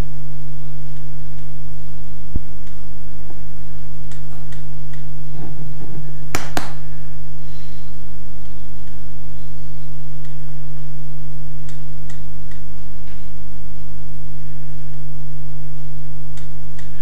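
Loud, steady electrical hum with several stacked tones, typical of mains hum on the recording. A few faint, irregular clicks and one sharper tick about six seconds in come from small card pieces being handled on a cutting mat.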